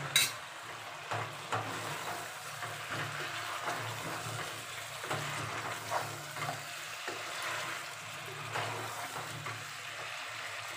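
A spatula stirring chunks of mutton and potatoes in spiced gravy in a pressure cooker, scraping and knocking against the pot with a steady sizzle of frying underneath. There is a sharp knock right at the start, and a low steady hum runs throughout.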